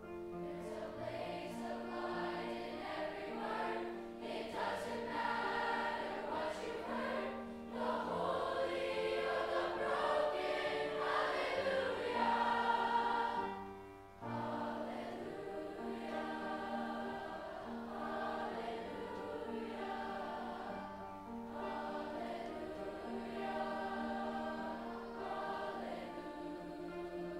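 A large mixed youth choir singing a sustained, slow piece with piano accompaniment, with a brief break between phrases about fourteen seconds in.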